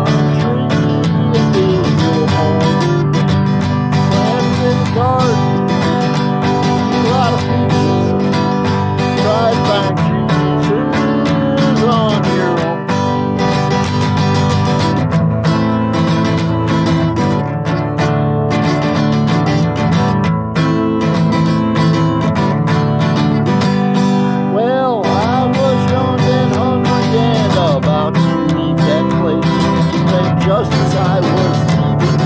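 Steel-string acoustic guitar strummed steadily, with a man singing over it at times.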